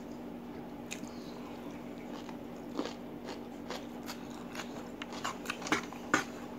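Crisp crunching bites and chewing of raw cucumber close to the microphone, with a sharp crunch about three seconds in and a quick cluster of louder crunches near the end.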